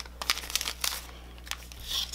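Clear plastic cellophane wrapper crinkling as it is handled and pulled open, in quick small crackles that are busiest in the first second, with a louder rustle near the end.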